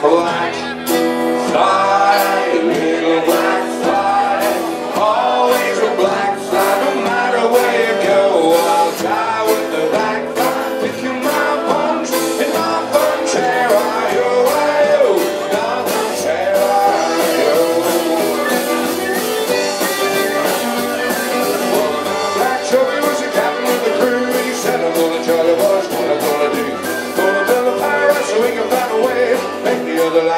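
Live folk band music with steady, rhythmic acoustic guitar strumming.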